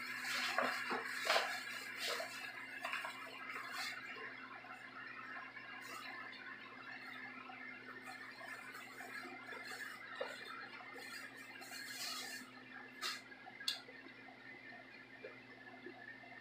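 Faint kitchen handling sounds, light rustling and a few sharp clicks, over a steady low hum; the rustling is loudest in the first couple of seconds, and two clear clicks come near the end.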